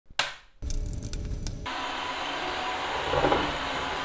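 A short knock just after the start, then from about a second and a half in a Tineco Floor ONE cordless wet-dry floor cleaner runs with a steady whirring rush and a faint high whine.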